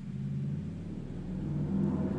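A steady low mechanical hum, swelling slightly towards the end.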